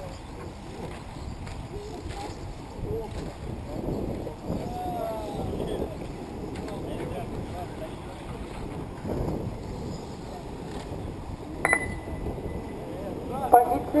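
Outdoor ambience at an RC race track: indistinct distant voices over a steady low background noise. Near the end there is a sharp click with a short high beep, and then a loudspeaker voice begins.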